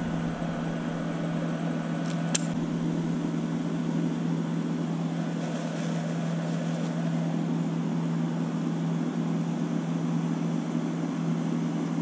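A steady mechanical hum from a running motor, unchanging throughout, with a single short click about two seconds in.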